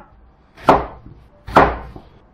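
A Chinese cleaver chopping through thick slices of white radish onto a wooden cutting board: two sharp cuts about a second apart, dicing the radish into cubes.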